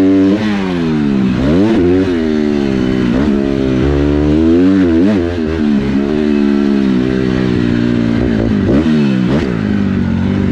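Motocross bike engine heard from on board while riding, its pitch rising and falling several times as the throttle is opened and shut through the track's corners and straights.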